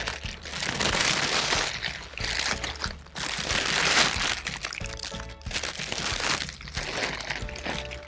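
Clear cellophane gift bag crinkling in repeated bursts as it is gathered at the neck and a ribbon is tied around it, over background music.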